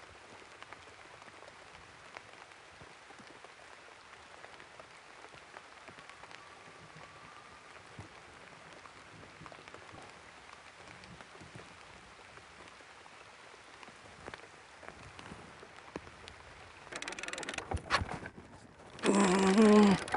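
Light rain pattering faintly and steadily on the river and boat. About 17 seconds in, a fast ratcheting click starts, the reel's line alarm (clicker) running as a fish takes line, and a man's voice breaks in near the end.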